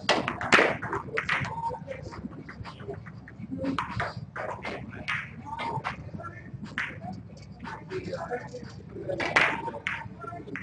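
Indistinct talking of people in the room, with scattered short sharp clicks and knocks among it, the loudest just after the start and again near the end.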